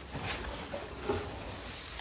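Cardboard and packing rustling and scraping as an inner box is lifted out of a shipping box, with a couple of light knocks.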